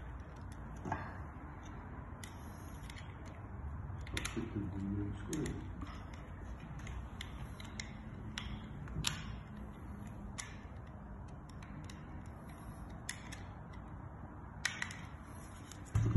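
Scattered light plastic clicks and scrapes of a blue 16 A industrial plug being assembled by hand: the cable-gland cap is screwed on and a housing screw is tightened with a screwdriver.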